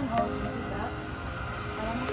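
Faint voices and background music over a steady low rumble.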